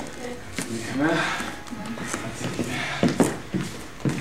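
Soft, low talking in a small, echoing room, with a few sharp knocks about three seconds in.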